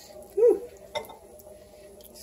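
A ladle scooping soup into a ceramic bowl. A short tone that rises and falls about half a second in is the loudest moment, and a light clink follows about a second in.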